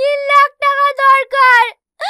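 A high voice singing with nothing else behind it, in short held notes with brief breaks between them, several sliding down in pitch at the end.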